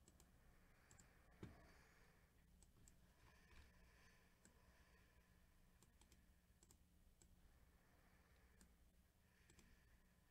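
Near silence with scattered faint computer mouse clicks as a list is selected and right-clicked, and a single soft knock about one and a half seconds in.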